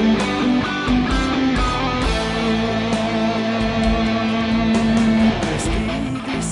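Electric guitar playing a lead melody over a backing track with bass and drums; about two seconds in it holds one long note for about three seconds before moving on.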